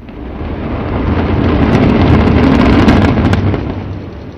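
Controlled-demolition implosion of a high-rise apartment tower (Alfa Serene): a rapid string of sharp cracks from the explosive charges over a deep rumble of the collapsing building, which swells to its loudest two to three seconds in and then fades.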